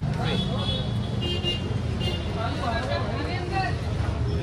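Street traffic: a steady low rumble of passing vehicles, with faint chatter mixed in.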